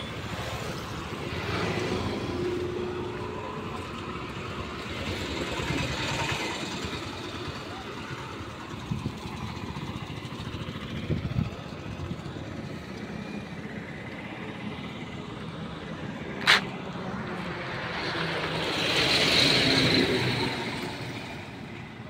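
Highway traffic passing by: vehicles approach and go past in swells, the loudest one building up and fading near the end. A single sharp click about three-quarters of the way through.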